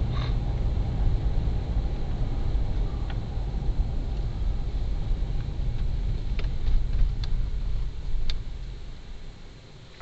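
A car driving at night, heard from inside the cabin: a steady low engine and road rumble with tyre hiss. The rumble eases off near the end as the car slows down.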